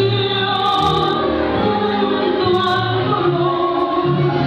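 Tango vals music in waltz time with a singing voice, playing steadily.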